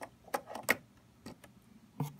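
A handful of short, sharp plastic clicks and rattles as the switch's contact block is handled and fitted onto the operating unit of the red stop button.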